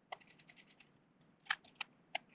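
Light ticks and clicks of a small screwdriver turning screws in the metal mounting plate and bracket of a CPU water block, with a few sharper clicks about one and a half seconds in.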